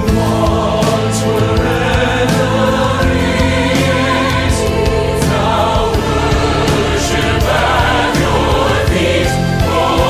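Choir singing a contemporary Christian choral arrangement over orchestral accompaniment, with regular percussion hits.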